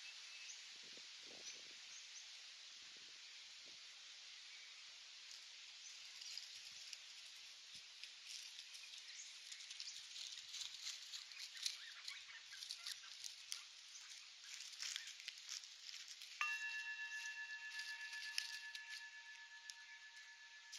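Faint outdoor ambience: a steady high hiss with dry leaves crackling and rustling, growing busier from about six seconds in. Near the end a steady high-pitched tone starts suddenly and holds.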